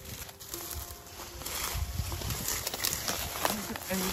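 Dry, brittle reed stalks rustling and crackling as a person pushes and steps through them, irregular and getting busier in the second half.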